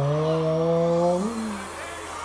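A man's long, drawn-out 'ohhh' of surprise, held for about a second and a half. Its pitch creeps slowly upward, then lifts and falls just before it stops.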